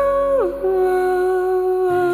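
Folk song: a woman's voice holds long notes, stepping down in pitch about half a second in, over sustained acoustic guitar, with a new low guitar note near the end.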